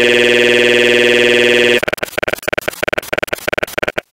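Loud, steady electronic buzzing tone made of many fixed pitches at once. Just under two seconds in it breaks into rapid, choppy stuttering, which cuts out at the end. The sound is typical of a digital audio glitch in the recording.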